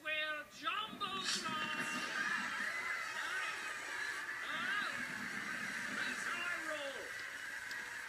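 A television playing a cartoon soundtrack of voices and music, steady in level from about a second in, with a voice in the room briefly at the start.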